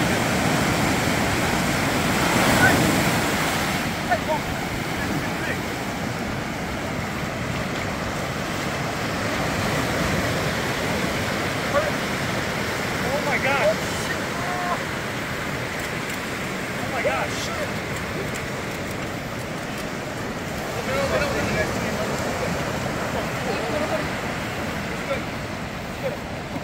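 Lake Superior waves breaking and washing up the shallows of a sandy beach, a steady rush of surf and sloshing water around people wading with a seine net.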